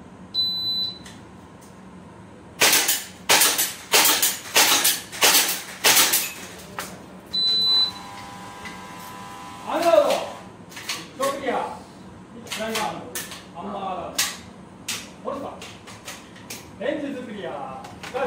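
A short electronic shot-timer beep, then a fast string of about a dozen airsoft pistol shots and hits on knock-down plate targets over about four seconds. A second beep follows, then voices.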